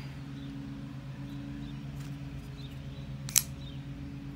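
A single sharp click about three seconds in: the Revo Ness folding knife's blade swinging open on its ball-bearing pivot and locking into its frame lock. A steady low hum runs underneath.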